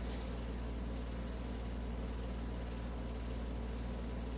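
Steady low electrical hum with a faint even hiss: room tone, with no distinct handling sounds.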